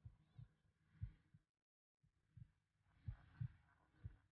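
Faint heartbeat sound effect: soft, low thumps coming in close pairs, a pair about every second or so.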